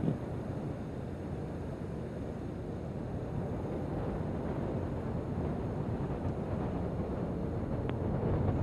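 Atlas V rocket's RD-180 first-stage engine in powered ascent: a steady, low rumble with a noisy hiss, growing slightly louder toward the end.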